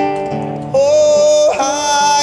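A man singing live to his own nylon-string classical guitar: a chord rings out at the start, then his voice comes in just under a second in with long, held notes that waver slightly in pitch over the guitar.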